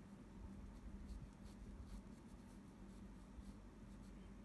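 Faint scratching of a graphite pencil drawing on Arches watercolour paper, several short, light strokes, over a low steady hum.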